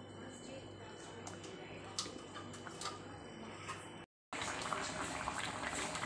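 Beef rendang in coconut milk simmering in a wok, with a spatula stirring through it and a few light taps against the pan. The sound cuts out briefly about two-thirds of the way in, and the bubbling returns louder.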